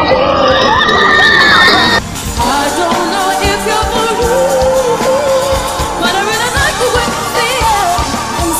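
Live pop performance: a female singer holds a very high whistle-register note over the band. The sound then cuts off abruptly about two seconds in, and a different live performance of the song begins, with drums, band and backing singers under a lead voice singing wavering runs.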